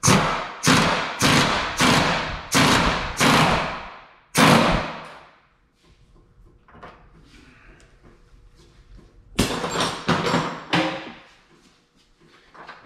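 Pneumatic impact wrench bumped in a quick series of about seven short bursts, then a longer run of hammering near the end, tightening the top nut on a coilover strut shaft.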